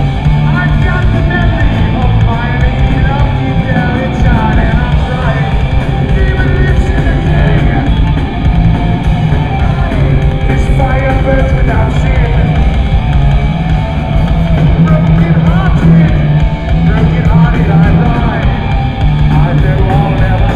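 Heavy metal band playing live and loud, with distorted electric guitar, bass guitar and a drum kit driving continuously.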